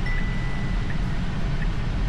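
Steady road and tyre noise inside a moving Tesla Model Y's cabin. A single held chime tone sounds for about a second and a half near the start, and a faint tick repeats about every three-quarters of a second.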